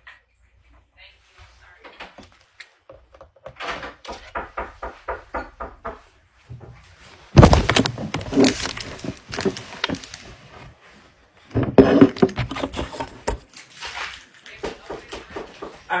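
Indistinct voices talking and shouting away from the microphone, heard through a live stream's phone audio, with a sudden loud thump about seven seconds in as the loudest stretch begins.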